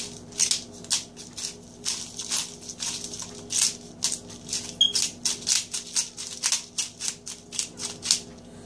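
A spatula stirring and scraping egg noodles and cream soup around a stainless steel mixing bowl, a quick irregular series of swishes and scrapes about three or four a second. A steady low hum runs underneath.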